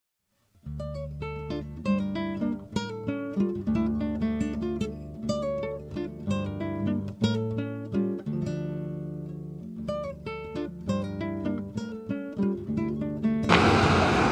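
Acoustic guitar music: plucked notes and chords beginning after a moment of silence. Near the end it cuts off to street traffic noise.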